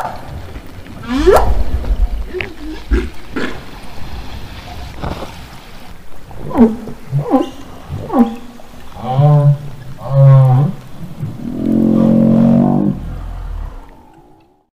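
Humpback whale vocalizations recorded underwater: a string of separate calls, with rising cries and short upsweeps at first, then two pulsed moans with many overtones and one longer moan near the end, over a low rumble.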